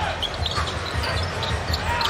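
Basketball being dribbled on a hardwood court, a run of repeated low bounces over the steady murmur of an arena crowd.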